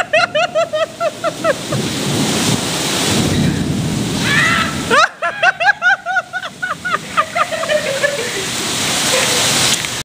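Two long fits of rapid, high-pitched laughter, the second beginning about halfway through and slowly falling in pitch, over the steady hiss of heavy rain.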